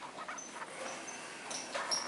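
Dry-erase marker squeaking against a whiteboard while words are written, a series of short high squeaks, the strongest near the end.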